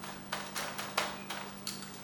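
Light, irregular clicks and taps of a black plastic seed-starting plug tray as fingers pack soil down over seeds in its cells, about six in two seconds.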